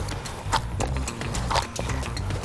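Bread dough being kneaded by hand in a glass bowl, giving soft knocks and slaps about once a second as it is pushed and folded against the glass.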